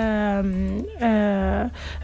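A woman's drawn-out hesitation sound, two long held "eeh" vowels on a steady, slightly falling pitch, as she searches for her next words mid-sentence.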